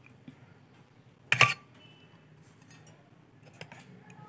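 Stainless steel kitchenware clinking while a decoction is strained through a tea strainer: one loud, sharp knock about a second and a half in, then a few light taps near the end.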